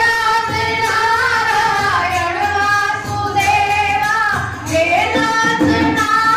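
Women singing a devotional bhajan, with long held notes that slide from one pitch to the next.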